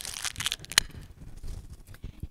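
Tissue paper crinkling as it is handled: a few short rustles in the first second, then a sharp tick just under a second in, then faint rustling.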